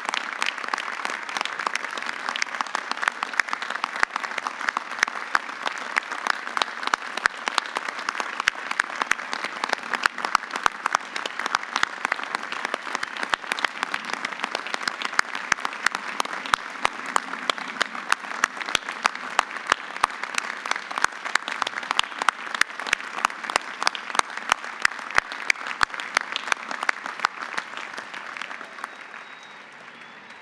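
Large crowd applauding steadily, with many individual sharp claps standing out close by; the applause dies away near the end.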